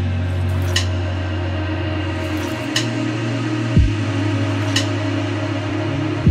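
Background music: sustained low synth tones under a slow beat, a sharp snare-like hit about every two seconds and a deep kick drum now and then.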